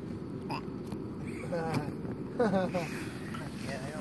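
Brief snatches of a voice, about one and a half and two and a half seconds in, over low, steady outdoor background noise.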